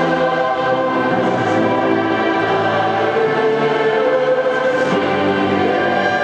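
Massed choir of school students singing sustained chords together with a full orchestra, steady and loud, with the big echo of a large arena.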